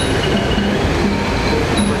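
Steady low rumble of busy city noise, with a few short faint notes above it.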